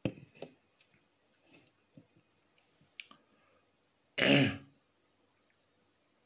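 A woman clears her throat once, loudly and briefly, about four seconds in. Before it there are a few faint clicks and handling noises.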